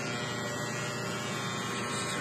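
Electric hair clippers running with a steady buzz while shaving a head.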